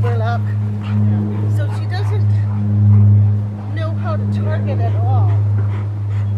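A steady low hum, like a motor running nearby, with short high squeaks rising and falling over it.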